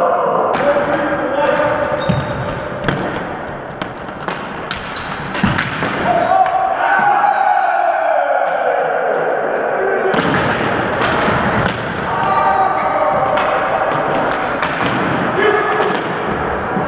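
Floor hockey play in a gymnasium with a hardwood floor: sticks clacking against the floor and each other, sneakers squeaking and players calling out, with the echo of a large hall.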